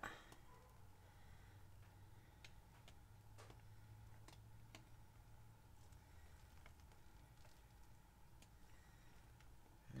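Near silence: faint room tone with a low hum and a few soft, scattered clicks.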